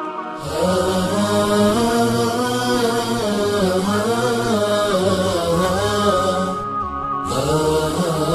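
Opening theme music: a chanted vocal line of long, wavering held notes over a low sustained drone. A steady hiss lies on top and drops out for about half a second near the end.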